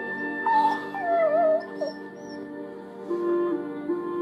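A German shepherd whining in wavering, drawn-out whimpers in the first two seconds, over soft sustained background music.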